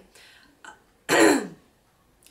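A woman with a cold clearing her throat once, sharply, about a second in.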